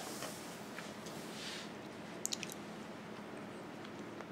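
Quiet room tone with a faint rush of noise about a second and a half in and two or three small sharp clicks a little past two seconds.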